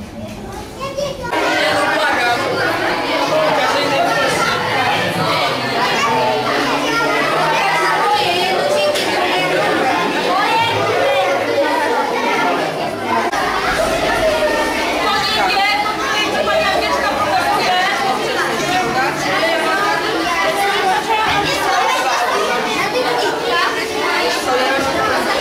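Many children talking over one another in a room, a continuous babble of chatter that swells up about a second in and stays steady.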